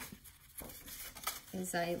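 Faint rustling and light handling noises of paper and cardstock being moved by hand, with a woman's voice starting again near the end.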